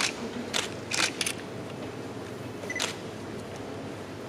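Several camera shutter clicks, a few in quick succession in the first second and one more near the end, the last preceded by a short autofocus confirmation beep. A steady room hum runs underneath.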